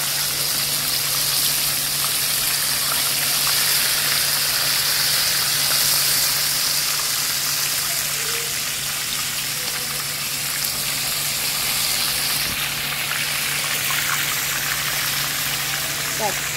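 Whole fish shallow-frying in vegetable oil in a nonstick pan: a steady, loud sizzle of the bubbling oil, over a faint steady low hum.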